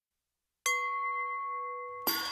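Silence, then a single bell-like chime struck once about half a second in, ringing on with a clear steady tone and slowly fading.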